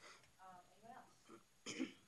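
A person clears their throat once near the end, a short rough burst that follows a few faint murmured words.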